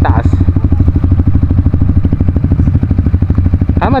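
Single-cylinder dirt bike engine idling close by, a loud, steady run of fast, even firing pulses.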